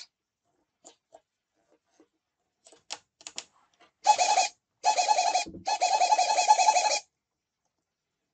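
Small RC servos on the model plane's control surfaces buzzing as they move, in three loud bursts from about four to seven seconds in, the last one the longest. A few faint clicks come before them.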